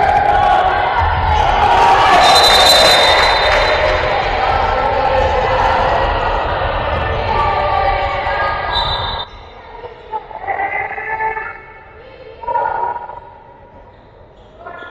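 Handball game in a sports hall: shouting voices over a ball bouncing on the court floor. The din is loud for about nine seconds, then drops suddenly to a few scattered calls.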